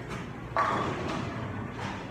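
Pool balls knocking on a pool table: one sharp clack about half a second in, with a fainter knock near the end, over a steady background din.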